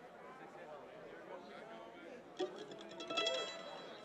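Audience chatter in a lull between songs, with a few plucked notes from the stage's stringed instruments. A short, brighter strum about three seconds in is the loudest moment.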